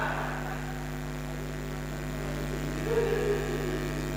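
Steady electrical mains hum from switched-on guitar amplifiers and PA speakers, with a brief faint sound on top of it about three seconds in.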